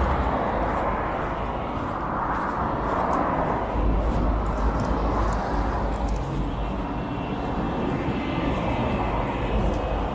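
Steady rumble of road traffic on a wide city avenue, swelling about three seconds in as a vehicle goes by, then easing.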